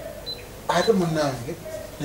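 Speech: after a pause of under a second, a voice says a short phrase, then trails off.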